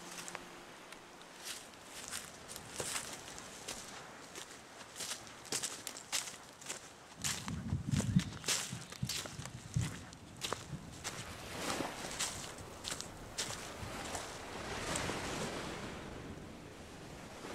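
Footsteps on dry leaf litter, bark and twigs, an uneven run of crackling steps with a few heavier thuds near the middle.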